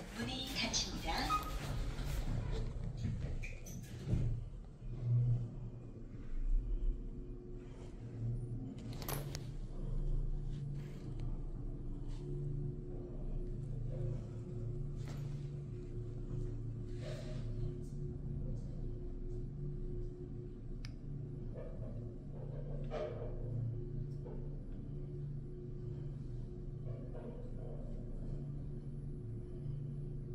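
Hyundai WBLX-GT-3 gearless traction elevator car travelling down: a steady low hum of the ride, with a sharp knock about four seconds in and a few faint clicks along the way.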